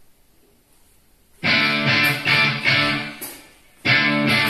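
Song intro on guitar. After about a second and a half of quiet, loud chords start in a steady rhythm, dip briefly, and the phrase starts again near the end.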